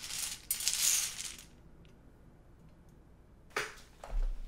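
Balls tumbling and rattling inside a small hand-cranked wire bingo cage as it is turned, for about a second and a half. A few faint clicks follow, and a short burst of noise comes near the end.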